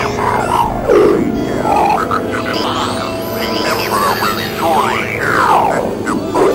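Experimental electronic synthesizer music: steady layered drones under many swooping tones that glide up and down and cross each other, with a strong downward sweep about a second in and more falling sweeps near the end.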